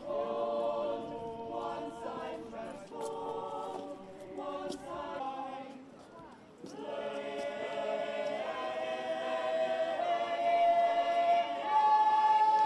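A choir singing: one phrase, a brief break about six seconds in, then a second phrase that swells to a loud held note near the end.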